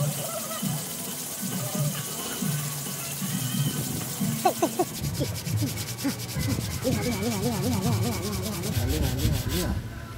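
Hand sanding: a small bicycle part rubbed back and forth on a sheet of sandpaper laid flat on a wooden table, a steady scraping rub, over background music.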